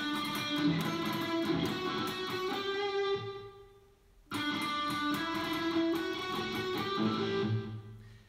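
Stratocaster-style electric guitar playing a short solo lick that climbs up the G string (frets 7, 9, 11, 12), played twice with a brief pause about four seconds in.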